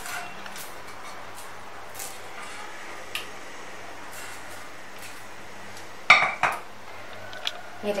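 Metal ladle scraping and tapping against a steel pot as thick mango jam is spooned onto a plate, with light scattered clinks. About six seconds in there is a louder clatter of metal knocks as the pot is set down onto a wooden trivet.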